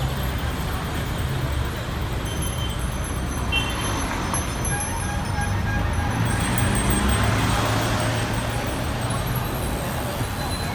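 Street traffic noise: a steady low rumble of motor vehicles and road ambience, swelling slightly about seven seconds in.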